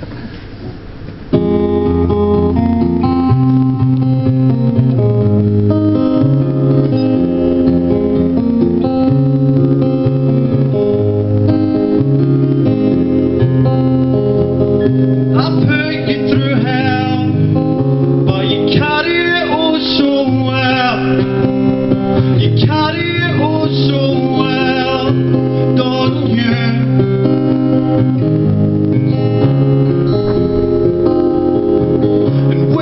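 Live song on acoustic guitar: sustained picked chords start about a second in and carry on steadily, and a man's singing voice comes in about halfway through.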